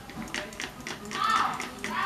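Hand-pumped spray bottle of hair spray spritzing onto hair in several quick, short bursts, with faint voices in the background.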